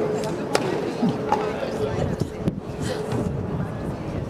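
A tennis ball tapped against a racquet's strings, a few sharp separate taps, over people talking.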